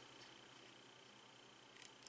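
Near silence: room tone, with a faint brief scrape of metal threads near the end as a coil is screwed into a rebuildable tank's base.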